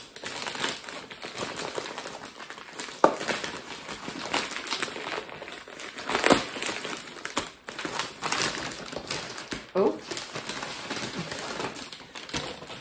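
Shiny rose-gold gift wrapping paper being torn and crinkled as a parcel is unwrapped by hand, with one sharp snap about three seconds in.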